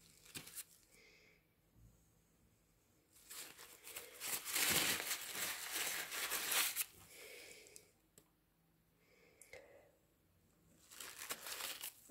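Crinkling rustle of material being handled close by, in bursts: a short one near the start, a longer, louder one from about three to seven seconds in, and another near the end.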